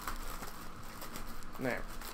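Thin plastic packaging bag crinkling and rustling as hands pull it open around a folded T-shirt, with a single spoken word near the end.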